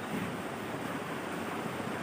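A whiteboard duster rubbing across a whiteboard: a steady swishing.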